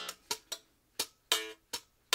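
Strandberg Boden NX 7 seven-string guitar played with slap technique: about six sharp percussive hits and pops on the strings, mostly muted. Two strokes in the second half ring briefly as short notes.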